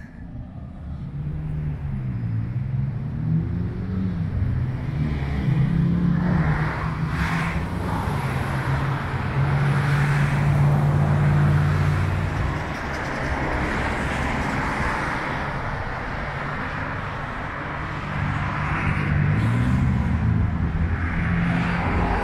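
Road traffic: motor vehicle engines going by on a busy road, loudest around the middle, with the engine pitch rising and falling as vehicles pass.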